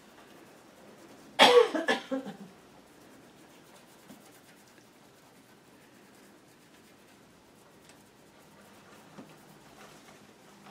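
A person coughing, several quick coughs in about a second, starting about a second and a half in.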